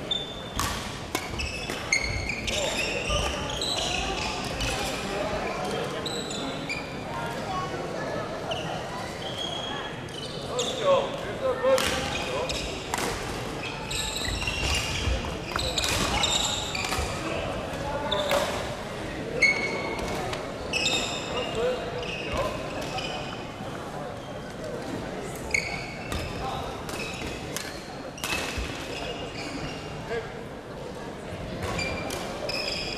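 Badminton play in a large echoing sports hall: rackets striking the shuttlecock in sharp irregular cracks, and sneakers squeaking on the wooden court many times, over a steady background of many voices.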